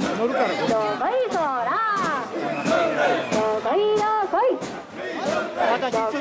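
Group of mikoshi bearers chanting a jinku together, many voices holding long, wavering shouted notes, with sharp claps scattered through.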